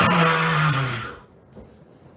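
A man's loud, raspy, drawn-out vocal sound into a handheld microphone. It is one held tone, slowly falling in pitch, and cuts off about a second in.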